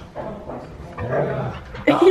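A dog making soft vocal sounds, with a short low sound about a second in.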